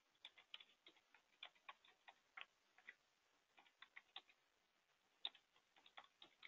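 Faint computer keyboard keys being typed: irregular clicks, a few a second in short runs, with one louder keystroke about five seconds in.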